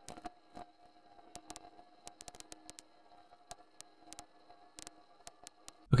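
Computer mouse clicking irregularly, at times in quick runs, over a faint steady hum.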